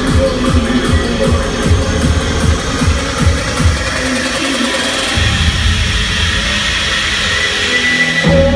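Dubstep played loud over a club sound system in a live DJ set: rapid kick drums, each falling in pitch, give way about halfway through to a held bass note under a rising noise sweep, the build-up before a drop.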